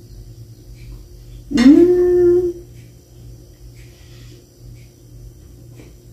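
A woman's closed-mouth "mmm" of enjoyment while chewing a mouthful of food: one hummed tone about a second and a half in, rising in pitch and then held for about a second.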